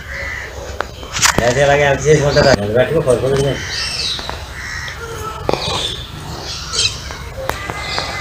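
Background voices of people talking, with birds calling, crow-like caws among them. The voices are loudest between about one and three and a half seconds in.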